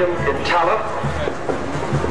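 Indistinct talking over parade music, with a steady low rumble underneath.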